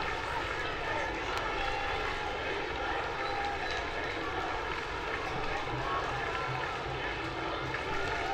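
Steady noise of a stadium crowd, many voices blending into one continuous din during the wait between penalty kicks.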